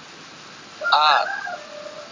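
Recorded voice from an Iqro Quran-reading app pronouncing the Arabic letter sound "a" (alif) once, about a second in, with a drawn-out tail.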